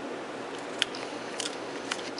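Shih Tzu crunching a dry dog biscuit: a few sharp crunches, the loudest about a second in, over a steady background hiss.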